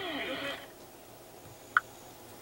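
Faint voice with a wavering, gliding pitch, playing from the car's AM radio, fades out about half a second in. Near the end a short, high beep sounds once from the infotainment touchscreen.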